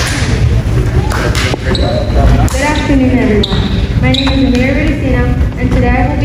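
A child's voice speaking into a podium microphone in a large hall, over a heavy, boomy low rumble.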